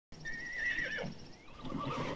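A horse whinnying: one high, wavering call lasting under a second that drops in pitch as it ends.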